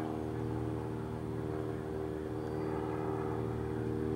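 A steady mechanical drone, like an engine running at a constant speed, holding one pitch with a low hum and evenly spaced overtones.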